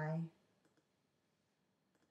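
A few faint clicks of a computer mouse in an otherwise quiet room, as a web page link is clicked to test it.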